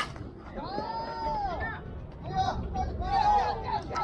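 A bat hitting the ball with one sharp crack right at the start, followed by players shouting on the field: one long call rising and then falling in pitch, then more shouted voices.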